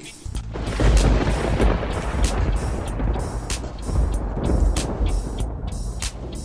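Music with a beat, under a loud, deep rushing, rumbling sound effect that swells in over the first second and keeps going, like a DJ drop or station-ID sweeper effect.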